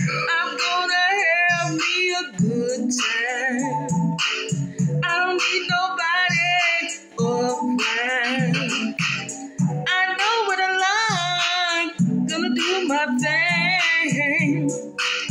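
A woman singing with strong vibrato, holding several long, wavering notes between short breaths.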